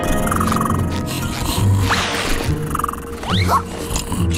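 Cartoon background music with a large sleeping creature's deep, growling snores underneath.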